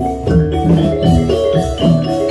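Gamelan accompaniment for the jathilan dance: bronze metallophones struck in a quick running melody over drum strokes.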